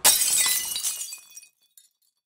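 A sudden shattering crash of breaking glass, with bright ringing and tinkling that dies away within about a second and a half: an added sound effect over the closing logo.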